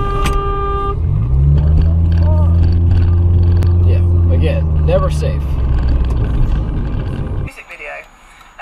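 Vehicle horns blaring: a steady horn note that stops about a second in, then a lower, deeper horn that swells up and is held for about six seconds before cutting off suddenly near the end.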